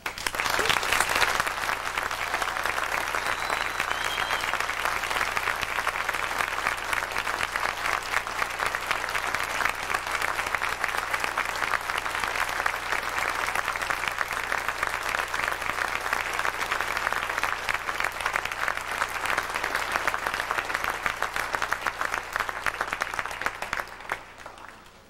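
Audience applauding, starting all at once at the end of a piece and holding steady for over twenty seconds, then dying away near the end.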